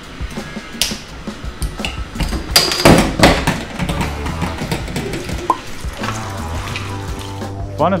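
Background music with a steady bass beat over water running from a kitchen tap into a stainless steel sink as an item is rinsed. The water is loudest for about a second, roughly three seconds in.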